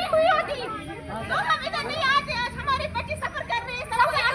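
Several young women talking at once, their voices overlapping in a crowd hubbub with no single clear speaker.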